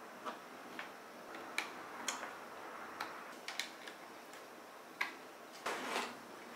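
Irregular small plastic clicks and ticks, about a dozen over a few seconds, from PC cables and their connectors being handled at a motherboard, with a short rattling cluster near the end.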